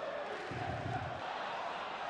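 Football stadium crowd noise, the fans chanting steadily, with a short low rumble about half a second in.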